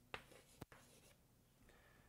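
Chalk writing on a blackboard: two short, sharp taps of the chalk against the board about half a second apart in the first second.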